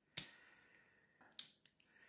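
Two sharp clicks, the first just after the start and a smaller one about a second and a half in, from a small metal tool scraping dried oil paint from the neck and cap of a paint tube.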